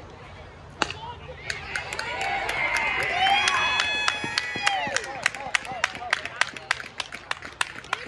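A baseball bat hits the ball with one sharp click about a second in. Spectators then shout and cheer, and this gives way to quick, even clapping, about three to four claps a second.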